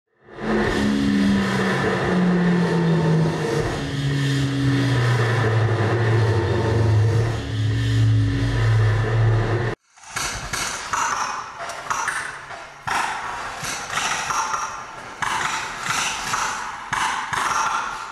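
Live experimental electronic noise music: a dense noisy wash over a low tone that slides slowly downward, cut off abruptly about halfway, then a crackling, stuttering texture of uneven high noise bursts.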